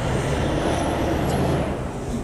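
Street traffic noise from a large road vehicle: an engine running under a broad hiss that eases off near the end.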